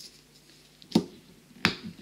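Two sharp clicks about two thirds of a second apart, with a fainter one just after the second.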